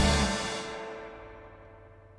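A live band's final chord ringing out after a closing hit and fading steadily over about two seconds, with one note lingering faintly at the end.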